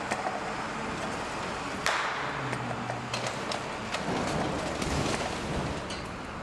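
Steady noise on a stage set with scattered knocks and clicks and one sharper bang about two seconds in.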